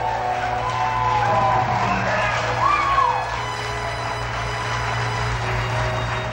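Arena crowd cheering and whooping over background music, with a steady low hum.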